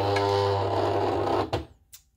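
Silhouette cutting machine's roller motor feeding the cutting mat in, a steady motor whir that stops abruptly about a second and a half in.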